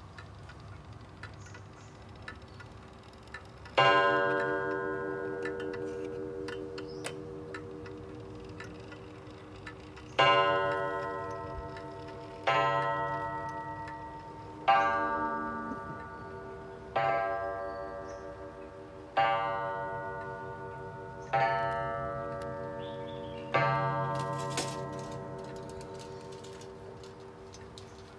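Old Meiji pendulum wall clock striking the hour on its coil gong with a deep tone: one strike about four seconds in, then seven strikes about two seconds apart, each ringing on and fading. The freshly cleaned and oiled movement ticks between the strikes.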